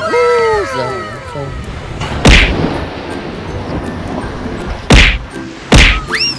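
Three hard whacks of a shovel blade driven down into beach sand: one about two seconds in, then two close together near the end. It opens with a drawn-out human cry that falls in pitch.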